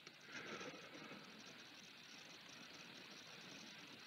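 Near silence: faint steady hiss of room tone, a little louder in the first second.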